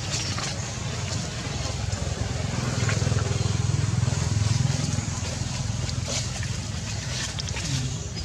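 A low engine rumble that swells from about two and a half seconds in, peaks through the middle, then fades again.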